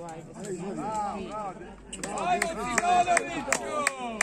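Several voices shouting and calling out during a football match, overlapping one another. In the second half comes a quick run of sharp taps and knocks.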